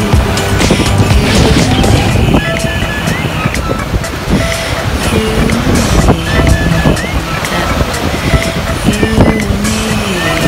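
Background music: a melody of held notes that step up and down in pitch, with a short rising figure recurring every few seconds.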